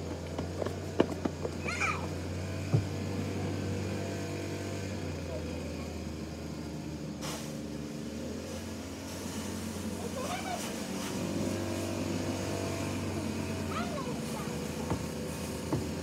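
Steady low hum with faint, distant children's voices now and then, and a few light clicks in the first seconds.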